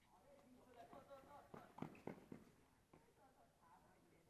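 Faint, distant voices of people talking, with a few soft knocks about halfway through.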